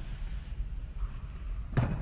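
Steady low room rumble with no distinct event, ending in a brief spoken "uh".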